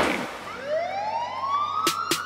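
Break in an acid house track: the beat drops out after a crash and a single siren-like synth tone glides steadily upward, with a sharp drum hit near the end as the beat is about to come back.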